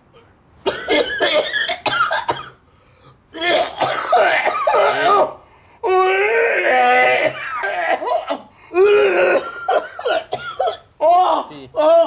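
A man coughing hard in four fits, choking on harsh cannabis (bango) smoke he has just inhaled, with strained, voiced gasps and groans running through each fit.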